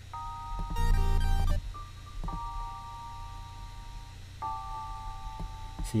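Logic Pro X playback of a G minor beat loop: held piano and electric-piano chords that change about every two seconds. About a second in there is a short burst of deep 808 bass with a bright chiptune lead.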